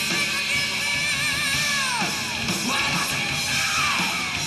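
Live heavy metal band playing loudly, topped by a high wavering wail that slides sharply down about halfway through, with another downward slide near the end.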